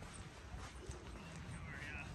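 Faint footsteps of someone walking on a paved path, over a low steady rumble.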